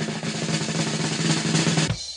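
Suspense drum roll sound effect: a rapid snare roll over a low held tone, growing louder and cutting off with a final hit just before the end. It is the build-up to a quiz answer reveal.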